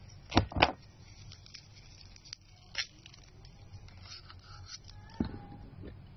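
Scattered clicks and taps from objects handled close to the phone's microphone, with two sharp clicks about half a second in and another near the end, and faint scraping and rustling between them.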